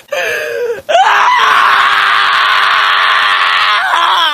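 Shiba Inu screaming while held down for a nail trim. A short cry falls in pitch, then about a second in comes one long, loud scream held at a steady pitch for nearly three seconds, dropping off at the end.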